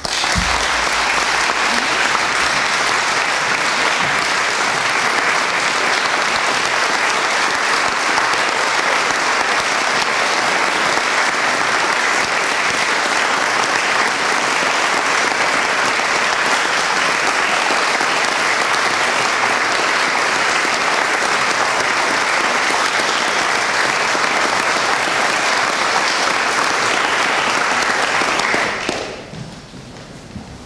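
Audience applauding at the end of a choir's performance: steady, loud clapping that starts abruptly and dies away near the end.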